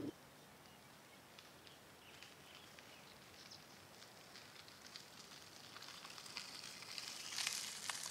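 Bicycle tyres, 32 mm gravel tyres on narrow road rims, crunching over a dirt and gravel trail: faint scattered crackles at first, growing steadily louder over the last few seconds as the bike comes close and passes.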